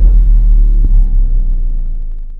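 Cinematic logo-intro sound effect: a loud, deep bass rumble that holds and then fades away near the end.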